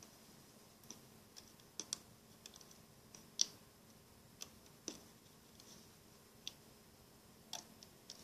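Scattered light clicks of a plastic loom hook and rubber bands against the plastic pins of a Rainbow Loom as bands are hooked and looped up the loom. The clicks are faint and irregular, with the loudest about three and a half seconds in.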